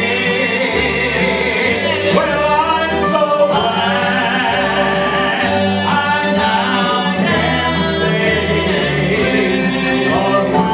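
Male southern gospel trio singing in close harmony through a church PA, over an instrumental accompaniment with a steady bass line.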